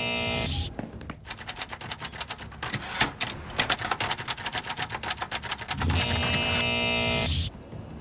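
Typewriter keys clattering in a fast, irregular run, with a short musical chord just before it and another after it, as a jingle.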